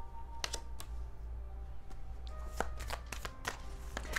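Tarot cards being flicked and shuffled by hand: a series of short, sharp card snaps and clicks, two in the first second and a quicker cluster in the second half.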